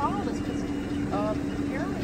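A vehicle engine idling with a steady low hum, and a quiet voice saying a few short syllables over it.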